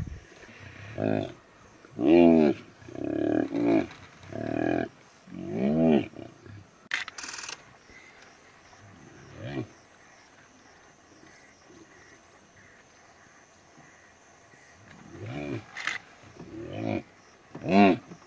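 Repeated drawn-out animal calls, each about half a second, rising then falling in pitch. They come thick and loud in the first few seconds, stop for a lull in the middle, then start again near the end. A short hiss comes about seven seconds in.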